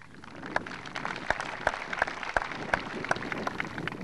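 Audience applauding, with single claps standing out; the applause builds about half a second in and thins out near the end.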